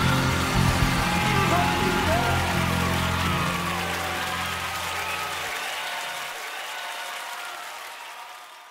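The end of a live gospel recording fading out: a held low chord under the crowd's applause and voices crying out. The low bass drops out about five and a half seconds in, and the whole sound grows steadily fainter.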